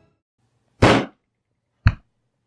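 A loud rushing burst of noise lasting about a third of a second, about a second in, then a short sharp pop near the end, both right on the microphone.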